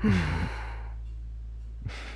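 A breathy, falling 'mmm' sigh lasting about half a second, then a short 'mm' near the end, over a low steady drone of background music.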